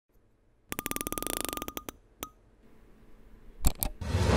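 Intro sound effect: a quick run of electronic ticks with a faint beep tone, slowing before it stops, like a percentage counter counting up, then one lone tick, a faint swell and two sharp clicks near the end.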